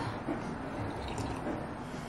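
A person drinking from a ceramic mug: a few small sips and swallows.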